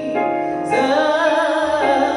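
A solo singer sings a slow hymn into a microphone with piano accompaniment, holding notes with a wide vibrato.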